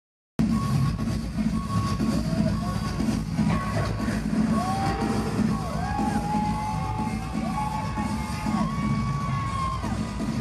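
Live band music in an arena, heard from the audience: a pulsing low beat under held, arching synth-like tones, with the crowd cheering. The sound cuts in abruptly about half a second in.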